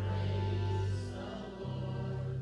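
A congregation singing a gospel praise chorus together, with instrumental accompaniment holding long bass notes that change about a second and a half in.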